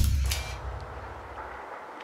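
A sudden deep boom, a cinematic impact hit, with a low rumble that dies away over about a second and a half.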